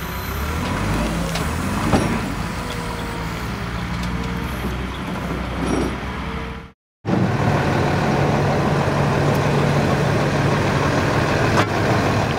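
Truck engine running while it slowly tows a large trailer, with a faint thin squeal in the first half. Just before 7 s the sound cuts out for a moment, then a steadier, louder engine hum follows.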